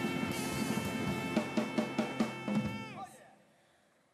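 Small jazz combo of piano, double bass and drums playing, with a run of sharp drum accents partway through. Near the end a held note slides down in pitch and the band stops, leaving a short break.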